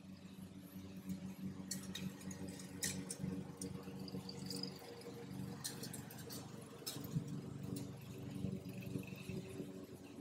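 Fingers rubbing sidewalk chalk into rough asphalt, making faint gritty scratches, over a steady low mechanical hum.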